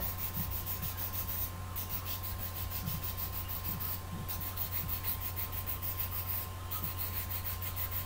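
Fine nail file (emery board) rubbed in quick, short strokes against a graphite pencil's lead, sanding it to a tapered point. The scratching stops briefly three times as the pencil is turned.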